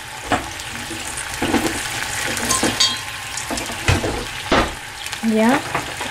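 Whole garlic cloves bubbling in a pan on the stove, a steady sizzle with a few sharp clicks, two of them about four seconds in.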